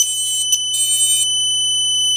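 A micro FPV quadcopter's onboard beeper sounding a continuous high-pitched tone, stuck on because its flight controller is being shorted out by wet grass. Two short bursts of its normal beeping pattern sound over the steady tone in about the first second.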